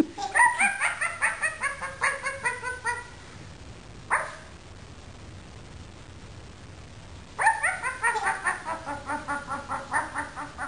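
A pink plush toy dog playing its recorded yipping bark twice: a quick run of high yips lasting about three seconds, then the same run again from about seven seconds in. A single short click comes between them.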